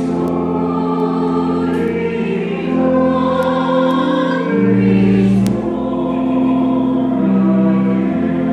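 Church organ playing sustained chords with deep bass notes, the chords changing every second or two, with voices singing over it.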